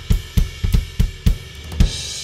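Acoustic drum kit played in a quick run of low drum hits, about four or five a second, with the drums ringing between strokes. Near the end a crash cymbal, one of the kit's Sabian Anthology cymbals, is struck and washes on.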